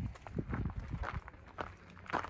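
Footsteps on a gravel trail at a steady walking pace.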